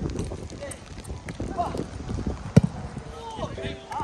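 A single sharp thud about two and a half seconds in, among scattered lighter knocks and faint distant voices.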